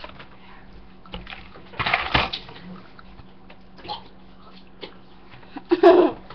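A person splutters a mouthful of ground cinnamon in one sharp, noisy cough-like burst about two seconds in, with smaller breathy sounds around it. A short voiced cry or laugh comes near the end.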